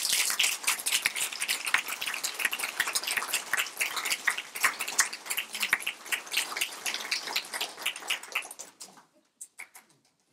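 Audience applauding: a dense patter of handclaps that thins out about nine seconds in to a few last claps.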